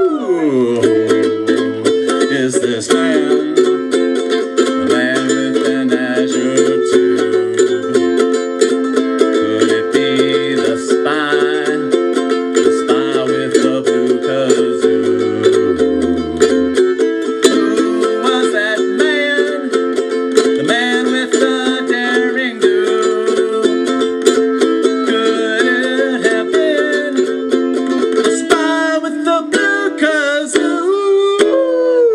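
Ukulele strummed in a steady rhythm with a wordless, wavering melody line over it; low bass notes sound under it for roughly the first half.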